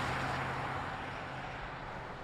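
A passing car fading away, its noise dropping steadily, with a faint low steady hum beneath that stops near the end.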